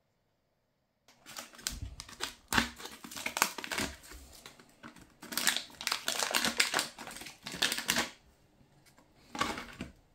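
Crinkling and crackling of a stiff foil ration pouch being opened and handled, with clicks and rustles. It starts about a second in, is loudest in bursts through the middle, and the wrapped wheat bar is pulled out near the end.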